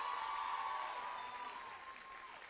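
Audience applause, dying away toward the end.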